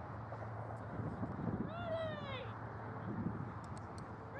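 A voice calling out once across an open field, a long high-pitched call that drops off at the end, over faint distant chatter.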